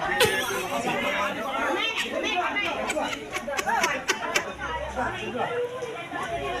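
A crowd of people chattering, many voices talking over one another at once, with a few sharp clicks in the middle.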